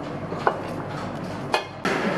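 A wooden spoon stirring coconut-cream sauce in a stainless steel pot, knocking lightly against the pot twice over a steady low background hiss.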